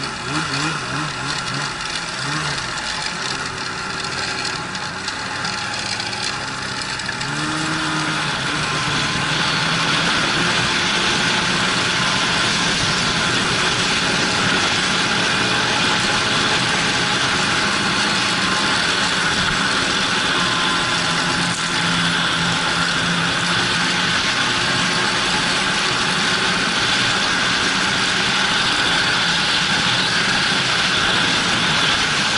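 Snowmobile engine heard from the rider's seat, pulling away from a standstill: at first its pitch wavers up and down at low revs, then from about eight seconds in it runs louder and steady at trail speed under a constant rushing noise.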